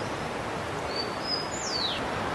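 A bird calling over a steady background hiss: two short high whistles, then a longer whistle sliding down in pitch near the end.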